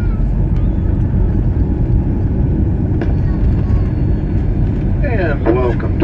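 Steady, loud low rumble inside the cabin of a Boeing 737-900ER rolling out on the runway after touchdown: its CFM56 engines and wheels on the runway. A cabin announcement starts near the end.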